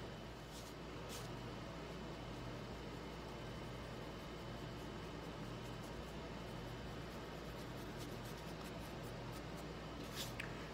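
Quiet room tone with a steady low hum, and faint light scratching of a paintbrush working paint over a paper page, the strokes coming more often in the second half.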